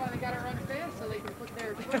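Several people talking, words indistinct, over a run of low, irregular knocking and rumble.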